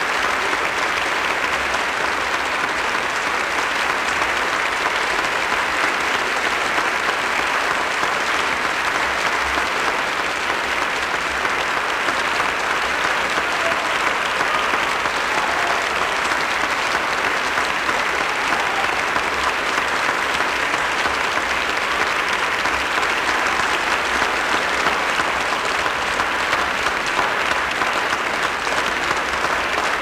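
Concert audience applauding steadily, a dense, unbroken clapping that keeps an even level throughout.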